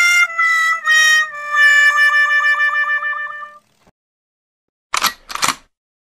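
Comic sound effect of four descending horn-like notes, the last held and wobbling, like a 'wah-wah-wah-waah' sad trombone. Two short hissing bursts come near the end.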